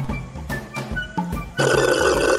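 Light background music with a soft percussive beat. About one and a half seconds in, a loud, steady slurping starts as a drink is sucked up through a straw.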